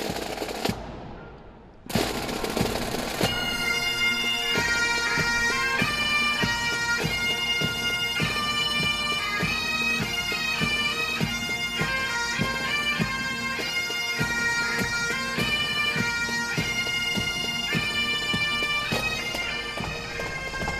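Scottish Highland bagpipes playing a tune over their steady drones. The sound dips and nearly cuts out near the start, and the tune comes in full about two seconds in.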